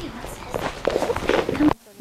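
Footsteps on a hardwood floor as a person walks and a puppy runs, with faint, indistinct voices behind them. The sound cuts off suddenly near the end.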